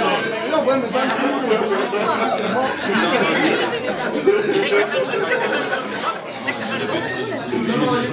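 Chatter of many people talking at once in a large, crowded room, with no single voice standing out.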